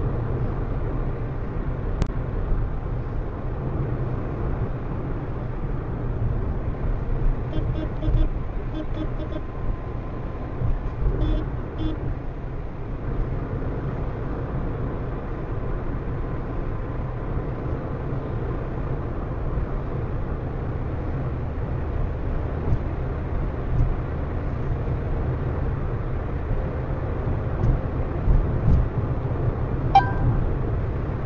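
Road and engine noise inside a car cruising on a highway: a steady low rumble, played back at double speed. A few short pitched sounds cut in around eight and eleven seconds in.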